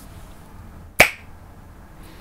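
A single sharp finger snap about a second in, setting off a jump-cut reveal.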